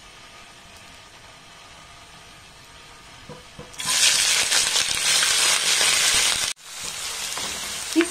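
Whole spices frying gently in hot ghee with a faint sizzle. About four seconds in, sliced onions go into the pan and it breaks into a loud, steady sizzle, which drops out for an instant a few seconds later and then carries on a little quieter.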